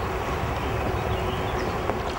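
Fast-flowing river water rushing past, a steady noise with a low rumble underneath.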